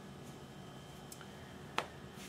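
Quiet room tone with a faint steady hum, broken by one short, sharp click near the end.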